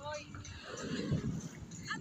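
Faint voices: a short high-pitched vocal sound right at the start, then a low rumbling noise, with speech resuming near the end.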